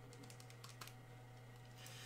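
Near silence with a few faint, quick clicks like keys being typed in the first second, over a low steady hum.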